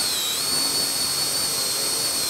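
18 V cordless drill boring a large hole into MDF with a wide-diameter bit: a steady high motor whine that dips slightly in pitch near the start, then holds.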